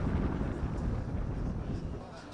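Wind buffeting the microphone outdoors: a low, uneven rumble with no distinct sound on top.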